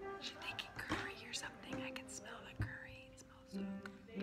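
Quiet whispered talking over faint background music with long held notes; a low sustained note comes in near the end.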